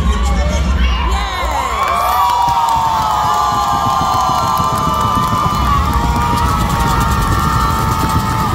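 A crowd cheering and screaming, many long high-pitched shouts rising together about a second and a half in and holding, over the routine's music beat.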